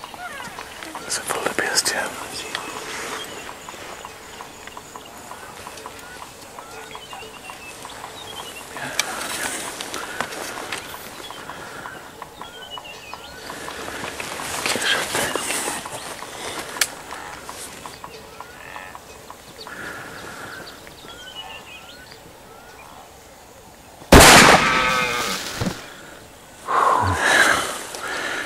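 A single loud hunting-rifle shot about 24 seconds in, fired at a wildebeest bull, with its report dying away over a couple of seconds. Before it, quiet bush with small chirping calls and soft rustles.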